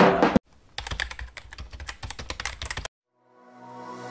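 Computer keyboard typing sound effect: a quick run of key clicks, about eight a second, for roughly two seconds after a loud sound cuts off just under half a second in. After a short silence, electronic music fades in near the end.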